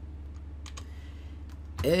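A few faint computer keyboard keystrokes over a steady low hum.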